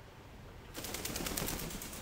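A toucan splashing in a tub of bath water, a rapid flurry of splashes and wing flaps starting just under a second in and lasting about a second and a half.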